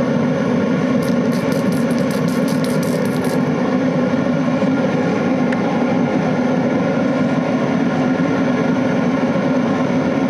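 Homemade blower-fed oil burner running steadily: a continuous rush of flame with a constant motor hum. A quick run of faint ticks comes between about one and three and a half seconds in.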